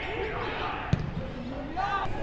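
A single sharp thump of a leather Australian rules football being kicked, about a second in, over shouting players and crowd voices.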